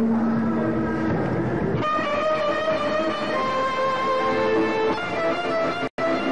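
A live Kurdish maqam performance. A long held note ends about a second in, and then the ensemble of violins and plucked strings plays an instrumental passage. The sound drops out for a moment just before the end.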